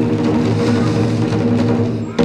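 Chinese lion dance percussion of drum, gong and cymbals, ringing on steadily from a loud stroke.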